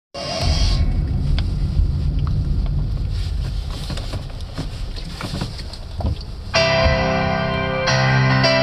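Low rumble in a car cabin with scattered small clicks and taps. About six and a half seconds in, a song with keyboard and guitar starts suddenly.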